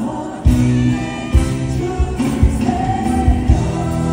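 Live trot song through a concert sound system: several male voices singing held notes together over the band, with a steady kick-drum beat. The music drops briefly at the start and comes back in with the drum about half a second in.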